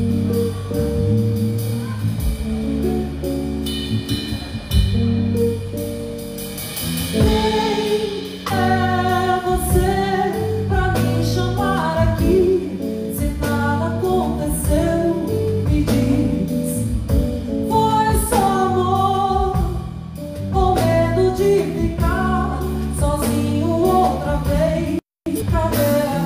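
A live band playing a slow song, with a woman singing over guitar and a drum kit. The first seconds are instrumental; her voice comes in about eight seconds in.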